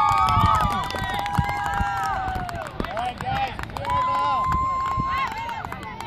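Several voices shouting long, drawn-out calls across a soccer field, overlapping one another, some held for a second or more and then falling away. A brief sharp knock comes about one and a half seconds in.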